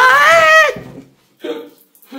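A woman's drawn-out, high-pitched startled shriek that wavers and rises in pitch, then cuts off just under a second in. She has just been surprised by the shower being turned on. A short breathy burst follows about a second and a half in.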